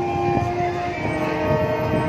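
Marching band playing long held brass chords that move to a new chord about a second in, with drum hits underneath.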